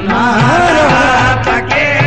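Qawwali music: a male voice singing a wavering, ornamented line over harmonium and hand-drum accompaniment, with drum strokes near the end.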